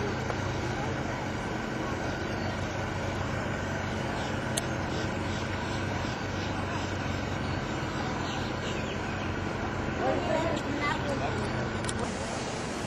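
A steady, low engine drone holding one even pitch, with faint voices near the end.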